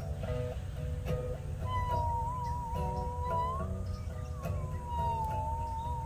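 Musical saw played with a bow: a single pure tone with a wide vibrato comes in about two seconds in, slides up, then glides slowly back down. Under it, a guitar picks rhythmic chords.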